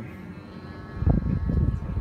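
Boshje clip fan running with a steady hum; about a second in, its air blast buffets the microphone with a loud, uneven low rumble.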